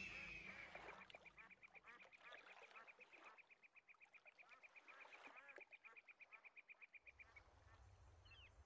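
Faint birds: scattered short chirps and a long, even, rapid trill of about ten pulses a second that stops near the end.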